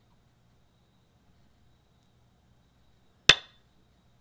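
Go-client stone-placement sound effect: a single sharp click of a stone set on the board, with a brief ring, about three seconds in. It signals a new move being played.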